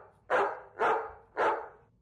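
A dog barking four times in quick, even succession, about half a second apart.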